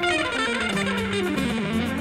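Electric guitar playing a jazz solo: a fast run of notes falling steadily in pitch, over a low bass line.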